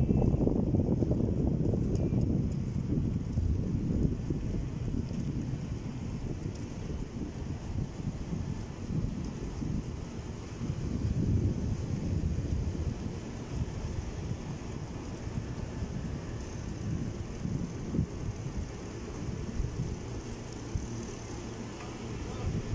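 Wind buffeting the microphone while riding along a street: a rough, low rushing rumble, loudest in the first few seconds and then easing a little.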